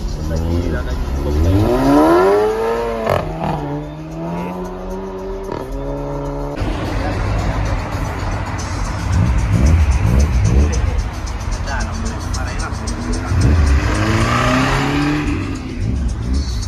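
A car engine revving hard, its pitch climbing for about two seconds and then holding high. It cuts off abruptly about six and a half seconds in, then revs rise again near the end.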